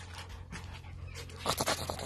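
A dog panting close to the microphone: faint at first, then quick, louder breaths from about one and a half seconds in.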